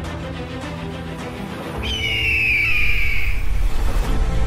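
Intro theme music with a bird-of-prey cry sound effect about two seconds in: one long, high, slightly falling screech. The music grows louder as the cry sounds.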